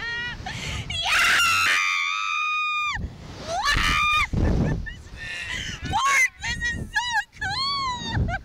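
Riders on a Slingshot reverse-bungee ride screaming as they are flung: a long high scream about a second in, another near four seconds, then a string of short yelps toward the end.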